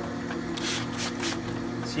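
Water sprayed in several short hissing squirts onto a quarter midget racing tire spinning on a tire-cutting lathe, over the steady hum of the lathe's motor.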